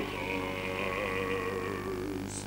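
Soft opera orchestra holding sustained chords in a pause of the bass voice. A loud sung phrase breaks off right at the start, leaving the quieter accompaniment.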